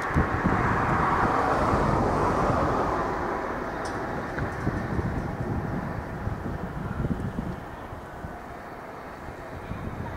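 Electric commuter train running slowly on the depot tracks: a rushing noise that is loudest in the first few seconds and then fades, over a low rumble with wind buffeting the microphone.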